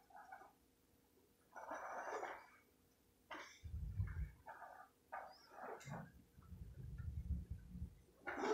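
Several faint, short vocal sounds from a pet animal, with low rumbling noise near the middle and through the last two seconds.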